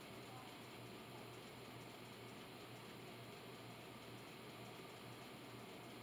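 Near silence: steady room tone with a faint even hiss and a low hum.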